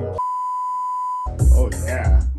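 A steady 1 kHz censor bleep, lasting about a second, replaces the audio of a hip-hop track mid-lyric. The beat then comes back in with heavy bass under a rapped vocal.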